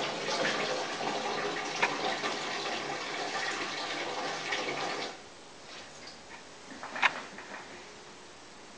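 Water running through the prototype's solenoid valves into its container, a steady rush that cuts off suddenly about five seconds in as the flow is shut off. A single sharp click follows near the end.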